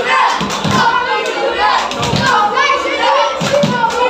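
A group of children chanting and cheering together while banging on the roof panel of the stand above their heads with their hands, making repeated dull thumps under the voices.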